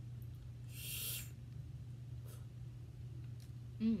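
Quiet eating sounds while snow crab legs are picked apart by hand: a short hiss about a second in and a few soft clicks, over a steady low hum, then an appreciative closed-mouth "mm" near the end.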